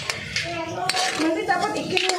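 Metal spoon stirring in a metal wok, knocking and scraping against the pan in several sharp clinks.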